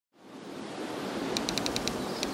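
A steady hiss of noise fading in from silence, then a quick run of about six light clicks near the end.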